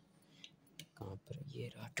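A few faint clicks and small knocks of objects being handled and moved about inside a cupboard in the dark.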